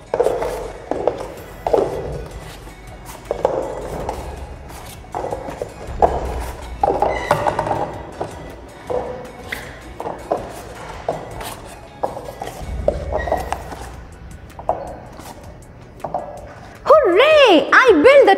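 Paper cups being set down one after another on a tabletop as they are stacked into towers: a scatter of light, quick taps and clunks, over background music. A woman's voice starts loud near the end.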